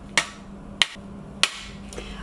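A polycarbonate chocolate mold knocked three times against a stone countertop, about every half second, to knock the set bonbons out of their cavities.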